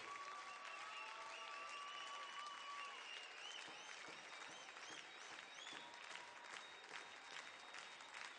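Faint audience applause after a song ends, a soft crackly patter with a few faint high whistle-like tones rising and falling over it.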